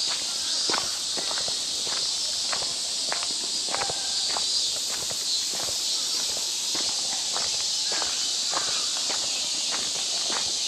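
Footsteps of a person walking at a steady pace on a dirt path strewn with leaf litter, about two steps a second, over a steady high-pitched hiss.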